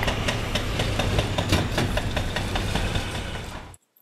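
Heavy demolition excavators working on a concrete roadway: a steady diesel engine rumble with irregular knocks and crunches of concrete being broken. It fades and cuts off just before the end.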